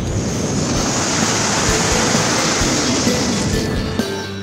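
A loud rushing whoosh over background music. It builds slightly and cuts off shortly before the end, as the music changes to a strummed guitar section.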